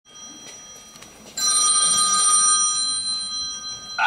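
A bell-like chime struck once about a second and a half in, ringing on in several steady high tones and slowly fading, opening the dance's music track over the hall's sound system.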